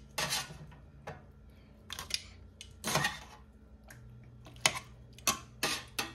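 Metal tongs clinking and scraping against a stainless steel pot and pan, about seven irregular clatters, as rib tips are moved into barbecue sauce. A low steady hum comes in about four seconds in.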